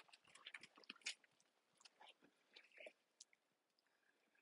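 Near silence, with faint scattered crunches and ticks through the first three seconds.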